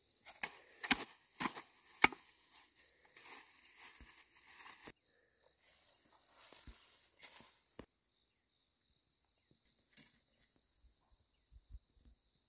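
Metal hoe blade chopping into dry, clumpy soil: a few sharp strikes in the first two seconds, then scraping and breaking up the loose earth. The scraping stops at about eight seconds, leaving only a few faint clicks.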